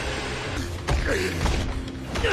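Sound effects from an anime battle scene: a dense rushing noise with a couple of sharp hits and a falling, gliding tone about a second in.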